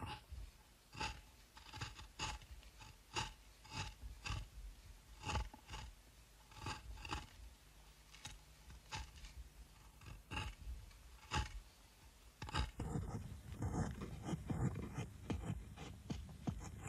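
Steel carving chisel being struck into wood, a light, ringing knock about once or twice a second. About three-quarters of the way through, the knocks give way to a denser scraping as a gouge pares shavings from the wood by hand.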